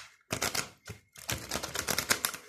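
Tarot cards being shuffled by hand: a few separate card snaps, then a fast run of clicking card edges from about a second in.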